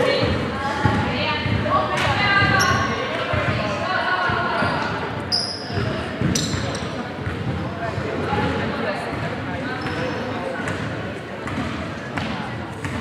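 Basketball bouncing on a hardwood court, with short high squeaks and players' indistinct calls, echoing in a large sports hall.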